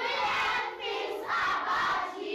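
A class of young children calling out together in chorus, in two loud phrases with a brief break a little past a second in.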